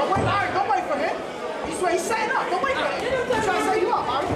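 Many overlapping voices talking at once: the chatter of people around a boxing ring.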